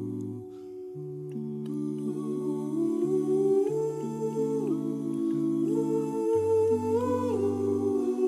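Six-voice male a cappella group (two countertenors, tenor, two baritones, bass) singing slow, held chords without words, the upper voices moving over a sustained low line. About half a second in, the sound briefly dips and the low voices drop out, then the chords move on.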